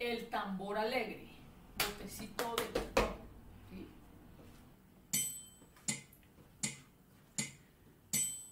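A woman's voice briefly, then a short clatter of knocks ending in a low thump about three seconds in, then four sharp, evenly spaced taps about three-quarters of a second apart.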